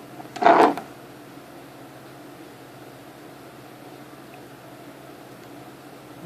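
A short rustle of hand handling noise about half a second in, as a small circuit board is powered up from a 9-volt battery, then a steady faint hiss of room tone.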